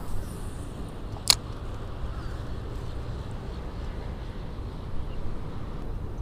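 Wind rumbling on the microphone, with one sharp click about a second in and a fainter one near the end.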